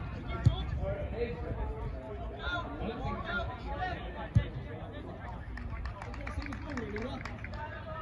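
Faint shouts and calls of footballers across an open pitch, with a short laugh at the start. Two sharp thuds cut through, one about half a second in and a louder one about four seconds in, over a low steady rumble.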